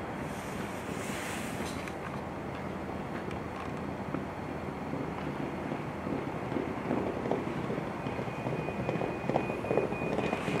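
Steady wind noise on the microphone. From about six seconds in, a galloping racehorse pair's hoofbeats on turf come through, growing louder as the horses near.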